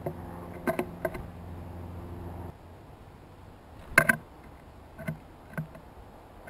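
Sharp taps and knocks of birds pecking at seed and landing on a wooden platform feeder, several through the first second, the loudest a double knock about four seconds in, then two lighter taps. A steady low mechanical hum runs beneath them and cuts off suddenly about two and a half seconds in.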